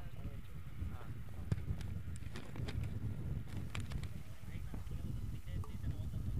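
Open-air cricket ground ambience: faint distant voices over a steady low rumble, with a few light clicks.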